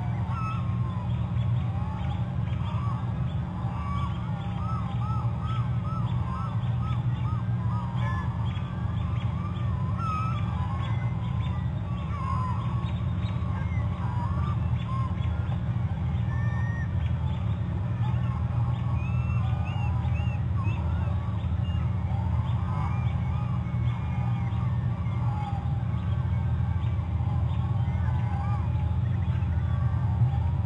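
Geese honking repeatedly in short series, over a steady low hum.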